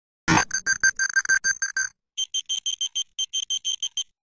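Electronic beeping sound effect: a sudden hit, then a fast run of short high beeps at about seven a second. After a brief pause about two seconds in, a second run follows at a higher pitch.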